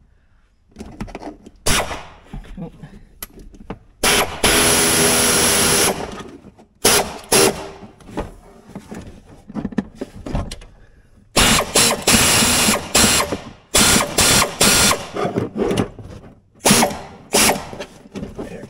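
Power drill driving screws into the plastic dash of a Can-Am side-by-side. There is one steady run of about two seconds, then several short bursts near the end, with knocks from the work between them.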